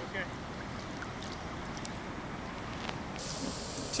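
Steady outdoor noise of wind and moving river water, with a few faint ticks; a higher hiss comes in about three seconds in.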